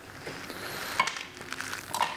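Light handling noises of small metal parts at a workbench, with a sharp click about halfway through and another near the end.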